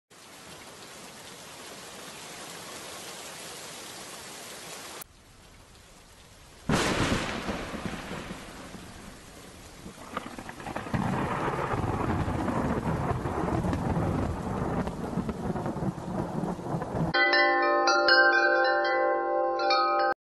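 Storm sound effects: steady rain that cuts off abruptly, then about seven seconds in a sudden loud thunderclap that fades into a long, heavy rumble of thunder. Near the end, chimes ring a run of clear notes.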